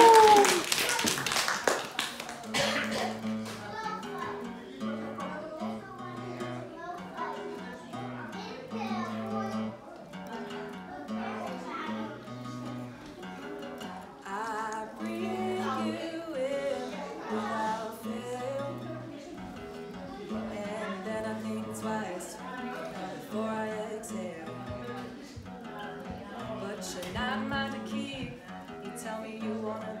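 Acoustic guitar playing a song's introduction, strummed chords over a steady repeating bass pattern, after a brief burst of clapping and a shout at the start.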